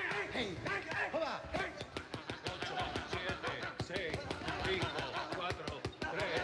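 Gloved punches landing on boxing focus mitts, a fast run of sharp slaps that comes thicker in the second half, heard over music and voices.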